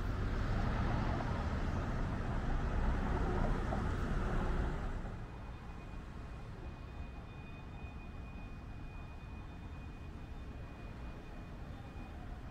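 City street traffic noise: cars passing at an intersection, louder for about the first five seconds, then dropping to a quieter steady hum.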